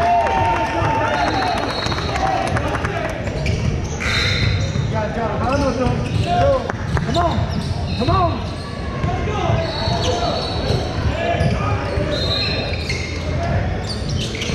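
Live youth basketball game in a gym: a basketball dribbled on the hardwood floor, brief high squeaks from sneakers, and shouting voices of players and spectators, all echoing in the large hall.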